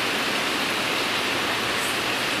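Heavy rain pouring down, heard as a steady, even hiss.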